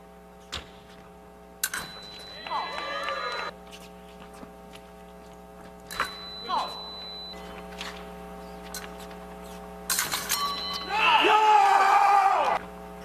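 Electric fencing scoring box sounding a steady high beep as an épée touch registers. It happens three times, about two seconds in, about six seconds in and near the end, each time just after a sharp clack. Loud shouts follow the first and last beeps.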